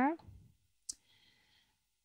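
The tail of a spoken word, then near quiet with a single short click about a second in, from working the computer.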